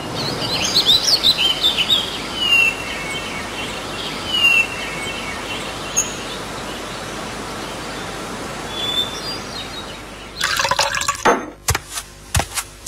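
Cartoon background of birds chirping: a few short, falling whistled calls over a steady hiss. Near the end comes a brief rush of liquid being poured, followed by a few sharp clicks.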